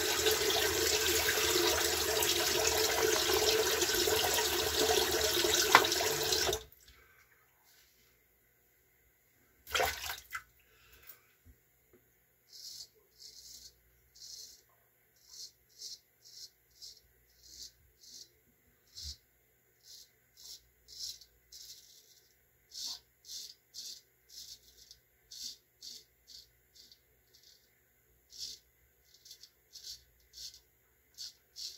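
Water tap running into a basin, shut off sharply about six seconds in. After a single knock, a straight razor scrapes through lather and stubble in short, quiet strokes, about two a second.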